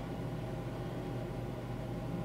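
Steady background hum and hiss of a home recording setup, with a faint constant tone over it and no change throughout.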